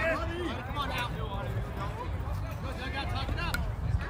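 Several voices talking at once, none clearly, over a steady low rumble.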